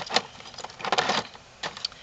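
Light clicks and rattles of a Dogtra e-collar receiver and its strap being handled and lifted out of a cardboard box, with a few small knocks about half a second to a second in.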